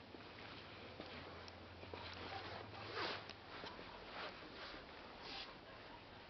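Faint rustling and light handling noise of a handheld camera being carried through a quiet room, with a louder rustle about three seconds in and another just after five seconds.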